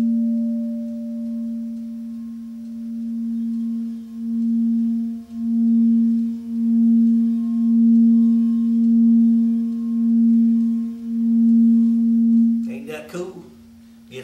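A white frosted crystal singing bowl rubbed around its rim with a rubber-ball-tipped stick, singing one low steady tone that carries on from a strike just before. The tone swells in pulses about once a second and grows louder, then stops about a second before the end.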